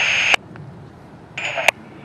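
Radio carrying the tail of a Union Pacific trackside defect detector's automated voice report, cut off with a click. A little past a second in, a short burst of radio static with a high thin tone ends in a sharp click.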